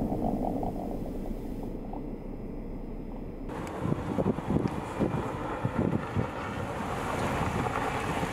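A Volkswagen Atlas SUV driving on a snow-covered road: a steady rush of road and wind noise, with wind buffeting the microphone. About three and a half seconds in the sound changes, and irregular crackles follow for a couple of seconds.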